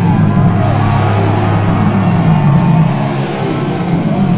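Nu-metal band playing live through a loud PA: heavy electric guitar and bass with drums, recorded from the crowd, dense and steady.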